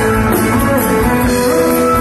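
Live prog-rock band and string orchestra playing an instrumental passage: electric guitar and sustained strings over a steady drum beat.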